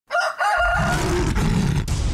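Title-card sound effect: a high, wavering call during the first second over a deep rumble that starts about half a second in and keeps going.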